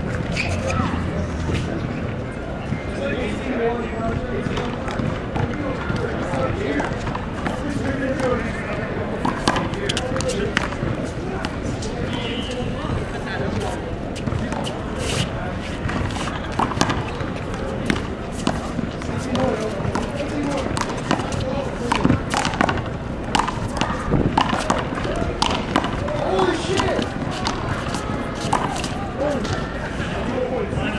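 Handball play: sharp, irregular slaps of a small rubber ball struck by hand and hitting the concrete wall and court, many times, over a steady background of voices chattering.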